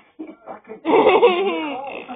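A person laughing loudly, starting about a second in after some quiet talk, heard through a television's speaker.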